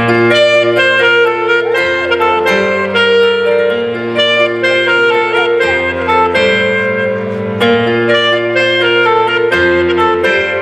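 Live rock band playing a song with saxophone, electric guitars, bass, drums and keyboard, with long held saxophone and keyboard notes changing about every second.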